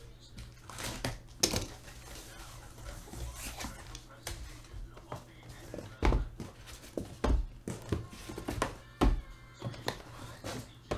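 Cardboard case opened by hand, its flaps rustling and scraping. Then sealed card boxes are pulled out and set down in a stack with several thumps, the loudest about six, seven and nine seconds in.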